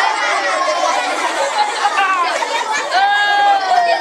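A group of children laughing and chattering together, with one child's high voice drawn out and slowly falling in pitch near the end.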